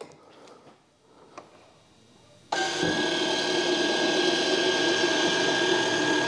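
Electric retract unit of a large RC jet's nose landing gear running as the gear folds up into its bay: a steady motor whirr with a fixed whine that starts suddenly about two and a half seconds in. Before it there is near quiet with one faint click.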